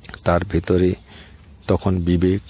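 A man speaking Bengali in a calm talk, with a short pause about a second in. A faint steady high-pitched whine runs underneath.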